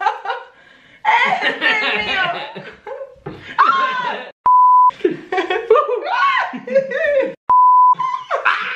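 Laughter and excited voices, broken twice by a steady 1 kHz censor bleep about half a second long, about four and a half and seven and a half seconds in, each starting and stopping abruptly.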